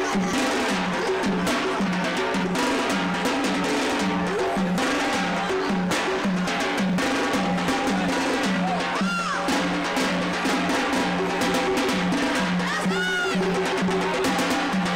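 Lively Yemeni dance music: a large double-headed drum beaten in a driving rhythm under a repeated melodic line of short held notes. Two brief swooping high calls rise over it about two-thirds of the way in and again near the end.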